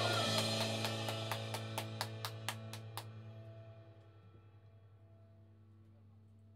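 A rock band's last chord ringing out at the end of a song, with about a dozen even drum-kit strikes, roughly four a second, over the first three seconds. The chord then dies away, leaving only a steady low hum.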